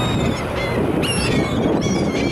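Gulls calling: short, high, repeated cries, the strongest about a second in, over steady low wind noise.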